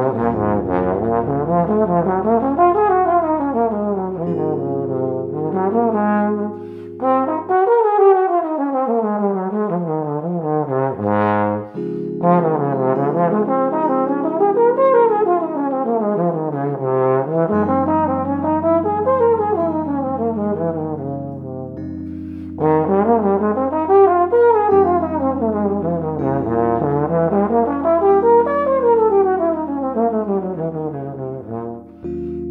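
Trombone playing freely in time, running an arpeggio up and a scale down over each chord of a jazz ballad's progression in a continuous stream of rising and falling lines. Low held chords sound underneath and change every few seconds.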